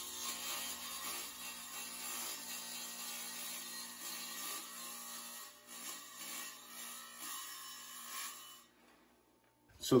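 Quiet rubbing and rolling of a wet tile saw's sliding table as a tile is pushed along it, over a faint steady hum.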